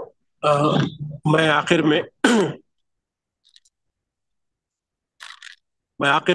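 A man's voice speaking for about two seconds, then a pause of near-silence with a faint breathy sound near the end.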